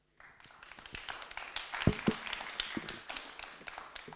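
Small audience applauding, the clapping building up over the first second and thinning out near the end, with a couple of low thuds about two seconds in.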